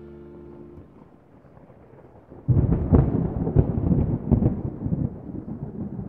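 The tail of a mallet-percussion music track fades out in the first second. About two and a half seconds in, thunder starts suddenly, a loud low rumble with crackling peaks that rolls on and tails off near the end.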